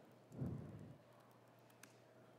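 A few faint keystrokes on a laptop keyboard over quiet room tone, with a low muffled thud about half a second in.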